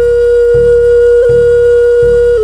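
Native American-style flute holding one long note over a slow, steady drum beat.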